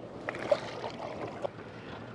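Water splashing and lapping at the side of a boat as a tailor is let go into the sea, a few short splashes in the first second and a half, the loudest about half a second in, over the boat's engine left idling.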